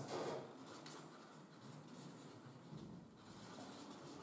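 Marker pen writing on a flip-chart pad in a series of short, faint strokes, with a denser run near the end.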